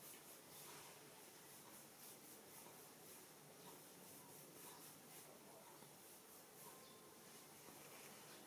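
Very faint scratching and rubbing of fingertips on a scalp and through hair during a head massage, barely above room hiss.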